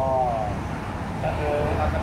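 Men talking in Thai, over a steady low background hum that grows a little stronger in the second half.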